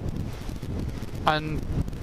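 Wind buffeting the microphone on a moving Kawasaki GTR1400 motorcycle, with road and engine noise underneath. A short vocal 'um' breaks in about one and a half seconds in.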